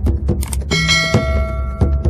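Intro music with a steady low beat. About two-thirds of a second in, a bright bell-like chime sound effect rings out and fades away, the kind of ding used for a subscribe-bell animation.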